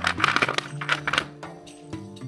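Hard plastic Mathlink cubes clattering and clicking against each other as a hand rummages through a tray of them, with a run of sharp clicks in the first second or so that then thins out. Background music plays throughout.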